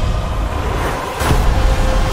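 Trailer soundtrack: a deep low rumble under music, with a rushing whoosh that swells a little past the middle, followed by sustained musical tones.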